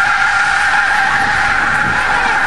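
School bus engine running loud with its exhaust pipe torn off, a steady high whistle held over the engine noise as the bus drives past.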